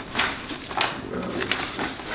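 Sheets of paper rustling and shuffling in a few short bursts as paper handouts are handled at a table.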